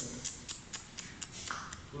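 Footsteps scuffing across a gritty floor, a quick run of light ticks about four a second.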